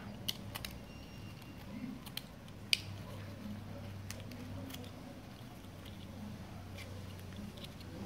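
Small knife cutting into the base of a grafted cactus to separate it from its rootstock: a few sharp, crisp clicks as the blade bites into the tissue, the loudest a little under three seconds in, over a faint low hum.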